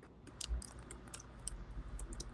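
Faint, scattered small clicks and light handling noise over a low steady hum.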